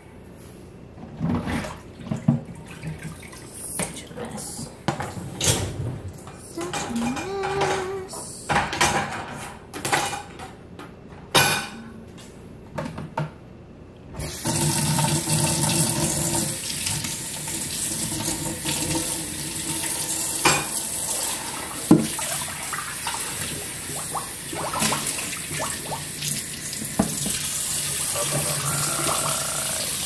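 Dishes and utensils clinking and clattering at a kitchen sink, then about halfway through a tap is turned on and water runs steadily into the sink, with occasional clinks of dishes under it.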